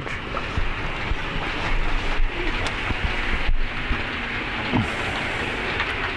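An OO-gauge model train running on the layout's track, a steady whirring rumble of motor and wheels on rail.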